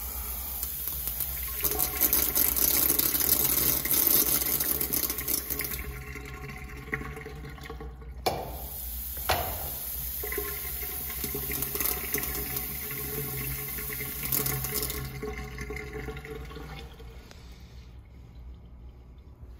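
Porcelain stall urinal flushing: water rushes from the spreader down the back of the stall, fading after several seconds. A click starts a second flush about eight seconds in, which runs until near the end and then tapers off.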